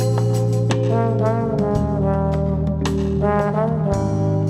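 Trombone playing a solo melody in short phrases, sliding and bending between notes, over band accompaniment with bass guitar and keyboard.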